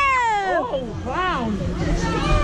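Human voices in drawn-out, sliding tones rather than plain talk: a long high wail falling in pitch at the start, then shorter rising-and-falling calls.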